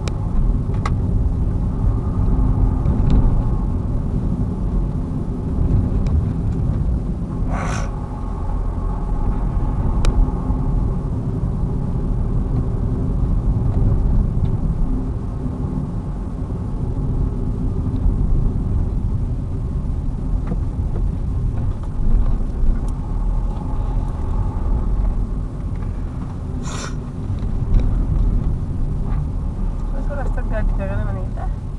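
Steady road and engine rumble of a car driving, heard from inside the cabin, with a faint steady hum. Two short, sharp sounds come through, about 8 seconds in and again near the end.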